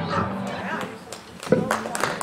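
A song ends and its last note dies away, then a small outdoor audience reacts: scattered voices, a sharp loud call about three-quarters of the way through, and the first handclaps near the end.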